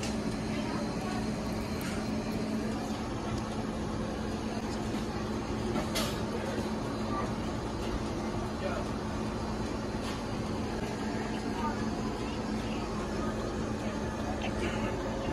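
Restaurant dining-room ambience: a steady low hum under indistinct background noise, with a couple of short faint clicks.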